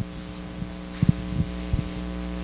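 Steady electrical hum from the sound system, with a few short knocks: two close together about halfway through and another near the end.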